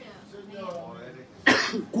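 A man coughs once, sharply and loudly, close to a handheld microphone, about one and a half seconds in. Before it, a faint voice murmurs.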